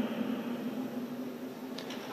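Room tone in a pause between spoken sentences: a steady hiss with a faint low hum. The reverberation of the last word dies away over the first second.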